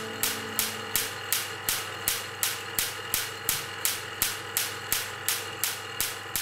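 A steady series of sharp clicks, about three a second, each dying away quickly. The last notes of guitar music fade out in the first second.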